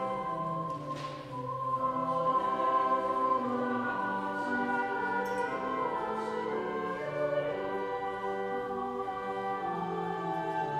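A choir singing with organ accompaniment, in held notes that step from one pitch to the next.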